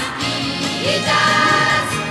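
Upbeat pop song sung by a chorus of children's voices over a backing band, with a note held through the second half.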